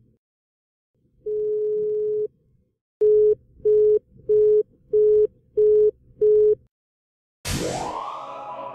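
Telephone call-progress tones at one steady pitch: a single long ring-tone beep of about a second, then a busy signal of six short beeps, roughly one and a half per second. Near the end a loud sound effect with a fast rising sweep cuts in.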